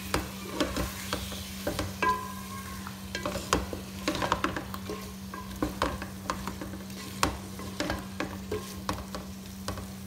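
Wooden spoon stirring and scraping cauliflower and potato pieces around an aluminium pot, with irregular knocks against the pot, while the vegetables fry in oil and masala.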